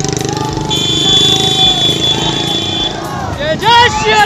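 Motorcycle engines running as the rider travels among other bikes. A steady high-pitched tone sounds for about two seconds in the middle, and shouting voices come in near the end.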